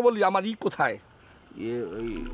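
A man's voice speaking Bengali dialogue, then a short pause and a brief drawn-out vocal sound near the end. A faint steady high-pitched tone runs underneath.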